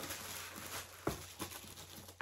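Tissue paper rustling and crinkling as items are handled in a packed box, with a light knock about a second in.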